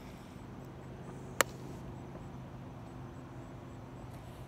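A single sharp click about a second and a half in, from a thin plastic water bottle crackling as it is chugged, over a quiet background with a faint steady low hum.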